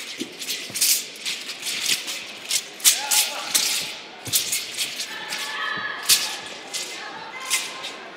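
Thin, flexible competition wushu broadsword rattling and swishing in rapid strokes as it is swung around the body, with a few dull thuds of feet landing and stamping on the competition carpet.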